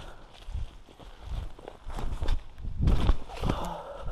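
Footsteps walking over forest-floor leaf litter and sticks: an irregular run of steps with heavier thuds, the loudest about three seconds in.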